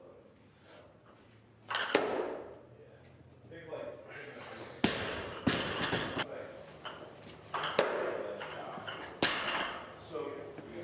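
Loaded barbell with rubber bumper plates striking the lifting platform, with a loud first impact about two seconds in that rattles on, followed by several more sharp knocks and clatters.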